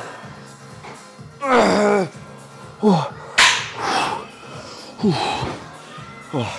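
A man grunting and breathing out hard through strained reps of a cable exercise, several short falling grunts with a sharp slap-like sound and a forceful exhale about three and a half seconds in. Music plays underneath.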